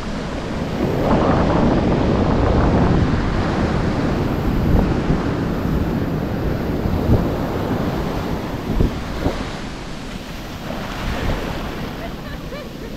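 Ocean surf washing in over the sand, swelling loudest a second or so in and then slowly easing, with wind buffeting the microphone in a few short low bumps.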